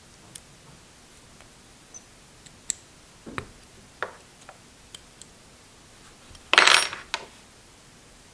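Small steel tooling handled on a workbench: scattered light metallic clicks and taps as a hex key works the set screw of a locking collar on a broach tool bar, then a louder metal-on-metal clatter lasting about half a second near the end as the bar is slid into the pulley's bore.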